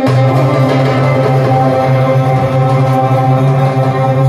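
Live Arabic ensemble music: violin and qanun playing together, holding long steady notes.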